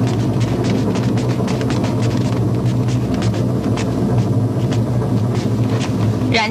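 A steady low drone from the drama's soundtrack, with many irregular clicks over it.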